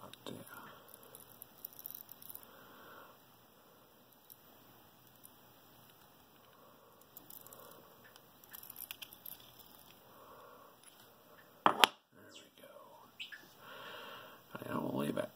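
Quiet hand handling of a brass lock cylinder and plug follower: faint small clicks, scrapes and rubbing of metal parts, with one sharp, loud click about twelve seconds in.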